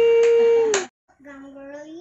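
A child's voice holding one long, steady high note, which cuts off abruptly a little under a second in. Then a quieter child's voice with a slowly rising pitch.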